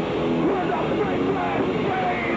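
A noise rock band playing live and loud, with distorted guitars and drums and a shouted vocal over them.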